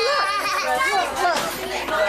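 Several overlapping voices, children's high voices among them, talking and calling out at once, with no clear words.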